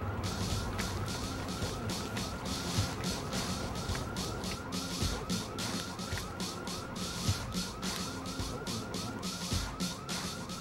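An emergency-vehicle siren sounding steadily in a fast yelp, a quick rising-and-falling sweep repeated about four times a second, over a low street rumble.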